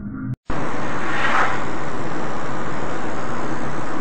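Steady road and wind roar inside a car moving at highway speed, picked up by its dashcam, with a brief swell about a second in. A snatch of background music before it cuts off sharply about half a second in.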